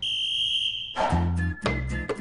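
A sports whistle blown in one long, steady blast lasting about a second and cut off sharply. Background music with a steady beat then starts.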